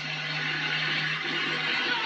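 Film soundtrack of an open-top car driving: a steady rushing noise with a low hum that drops away near the end.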